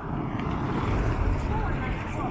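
A small car driving past close by, its engine and tyre noise swelling to a peak about a second in and then easing off.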